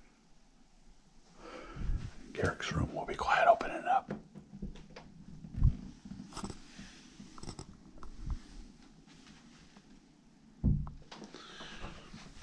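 A person's voice, soft and hushed, for about two seconds early in the stretch, followed by scattered thumps and bumps; the loudest thump comes near the end.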